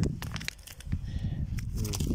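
Stones and gravel of a rubble heap clicking and crunching in a few short, sharp knocks as a lump of quartz is handled among them.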